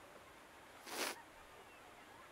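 Quiet room tone with one short swish of noise about a second in.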